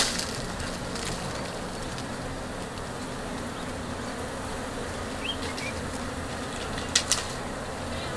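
Honeybees buzzing steadily around an opened hive and a lifted brood frame, with one short knock about seven seconds in.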